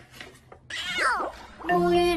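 A cat meowing once, a single call that falls in pitch, around the middle. Music starts near the end.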